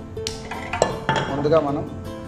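Nonstick pan set down on a gas stove's metal burner grate: two sharp clanks near the middle, over background music.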